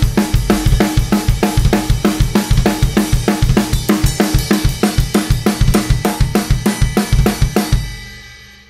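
Acoustic drum kit played in a fast, even metal beat, with kick and snare under Paiste Color Sound 900 cymbals. Near the end the playing stops and a cymbal rings on and fades.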